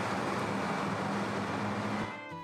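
Street traffic noise: a steady hiss of road noise with a low, even engine hum as a pickup truck drives away.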